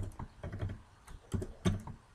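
Computer keyboard being typed on: a run of separate, unevenly spaced keystrokes.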